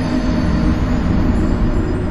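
Video-game 'YOU DIED' death sound effect: a loud, low, steady rumbling drone with a few held deep tones.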